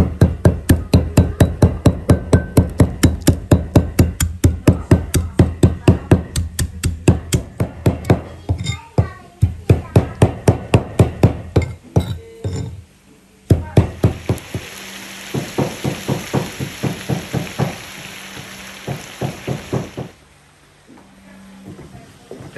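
A heavy cleaver chopping combava (kaffir lime) leaves on a thick plastic cutting block: rapid, even strikes about five a second. They pause briefly about twelve seconds in, then resume over a steady hiss and stop a couple of seconds before the end.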